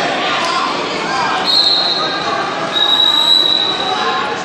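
Spectators chattering in a large gym hall, with two long, steady high-pitched tones, one about halfway through and a longer one near the end.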